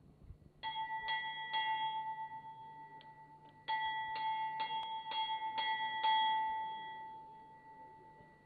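Hanging metal temple bell rung by hand: three strokes, a short pause, then six more strokes in quick succession. The last stroke rings on and slowly dies away.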